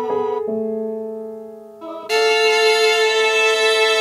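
Live electronic music played on touchscreen tablet instruments: held, keyboard-like synthesizer chords. One chord fades away over the first two seconds, then a new, louder chord comes in about two seconds in and holds.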